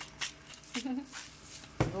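A woman's short laugh, with a few light clicks early on and a sharp knock near the end.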